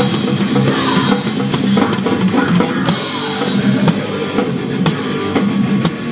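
Loud thrash metal from a band: a fast drum kit with bass drum and cymbals under distorted electric guitar and bass.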